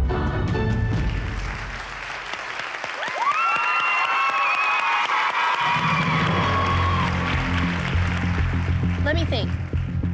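Audience applauding, with high held cheers and whoops from about three seconds in, as the dance music fades out. A low background music track comes in about halfway through, and a voice begins near the end.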